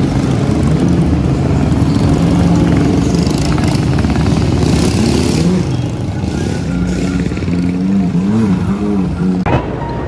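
A pack of dirt bikes and ATVs riding through a city intersection, their small engines running loudly together. The engine pitch rises and falls as riders rev, about five seconds in and again near the end.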